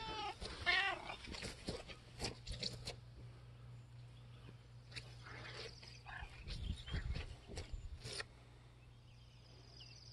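A pet gives a quick run of short, high-pitched rising-and-falling calls in the first second, followed by faint clicks and rustling in the grass.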